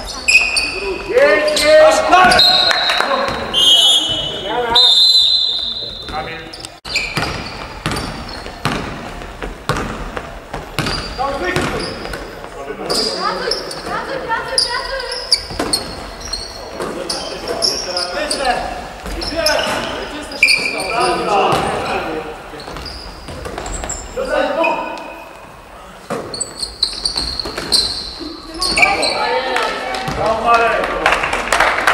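Live basketball game sound in an echoing sports hall: a basketball bouncing on the wooden court, short high squeaks of sneakers on the floor, and players' voices calling out.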